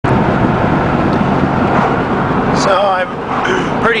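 Cab noise of a Dodge Dakota pickup under way, its engine running on wood gas: dense engine and road noise, loud for about the first three seconds and then easing off.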